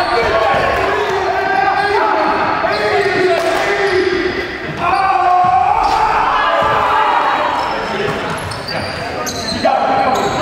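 A live basketball game in a gymnasium: the ball bouncing on the hardwood court, with players' indistinct voices calling out.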